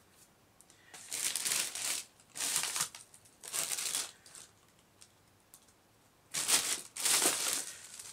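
Plastic mailing bag crinkling and rustling as it is handled, in five short bursts with a longer pause in the middle.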